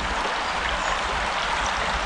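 A shallow brook flowing over a stony bed, a steady rush of water.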